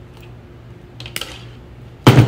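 Klein crimping tool squeezing a red insulated butt-splice connector onto the joined wires, giving a few faint clicks about a second in over a low steady hum.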